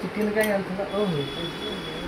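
A person's voice talking in short phrases; no other sound stands out.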